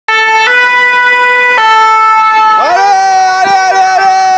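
French two-tone emergency siren on a fire-brigade rescue van, loud, stepping between a high and a low note. About two and a half seconds in, a different single note slides up and holds steady.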